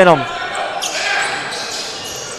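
Court sounds of a basketball game in an echoing gym: the ball and players' shoes on the hardwood floor, with a few short high sounds about a second in.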